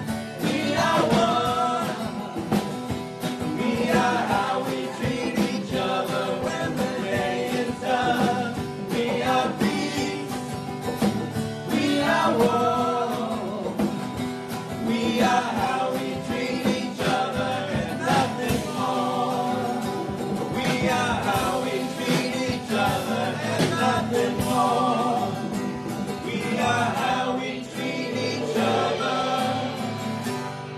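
A live acoustic band playing a song: a strummed acoustic guitar under a lead singer, with several backing singers joining in together.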